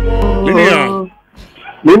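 Music cutting off about half a second in, followed by a dog's short barks and yelps, the loudest near the end.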